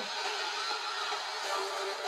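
Low-level live concert audio: a soft, sustained musical intro with faint held tones over a steady background hiss.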